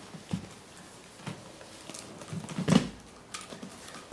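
Camel-hide straps of a tabla being hauled tight by hand: scattered creaks, rubs and soft knocks from the straps and drum shell, loudest in a cluster a little under three seconds in.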